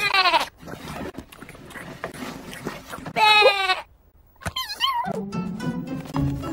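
Cartoon lamb's bleats, voiced by a performer: a short falling bleat at the start and a longer one about three seconds in, then a wavering, falling call. Light background music comes in with low sustained notes near the end.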